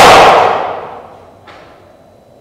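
The end of a loud ensemble shout and music dying away in the theatre's reverberation over about a second. After it the stage is quiet, with one faint knock about one and a half seconds in.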